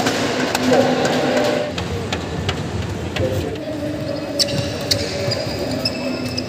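People talking in a large indoor hall for the first couple of seconds, then a badminton rally starts: three sharp racket strikes on the shuttlecock, about half a second to a second apart, near the end.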